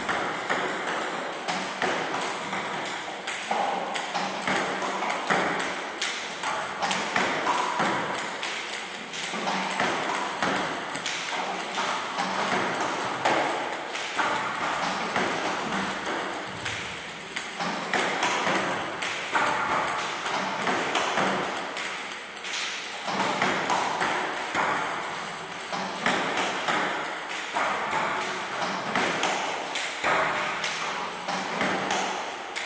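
Table tennis balls clicking off paddles and table tops in quick, irregular succession, many hard ticks overlapping.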